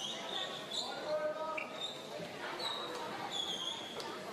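Indoor basketball arena ambience: faint scattered voices of players and crowd, with several short, high squeaks of sneakers on the hardwood court.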